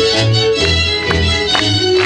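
Live symphony orchestra playing an instrumental passage of a folk-style song, violins carrying the melody over a regular pulse of bass notes.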